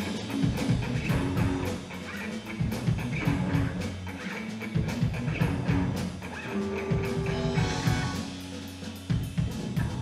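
Live rock band playing an instrumental passage: a drum kit keeping a steady beat with kick and snare under electric guitars and bass guitar.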